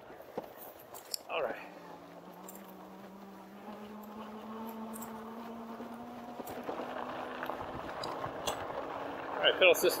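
Electric bike's geared hub motor whining under power, its pitch rising slowly as the bike speeds up, over tyre noise on a dirt trail.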